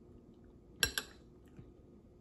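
A metal spoon clinks twice against a ceramic bowl about a second in, the first strike louder, each with a brief high ring.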